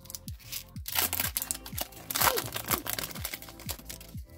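Foil booster-pack wrapper crinkling and tearing in the hands as the pack is opened and the cards slid out, in two louder bursts about one and two seconds in. Background music with a steady beat of about two kicks a second plays throughout.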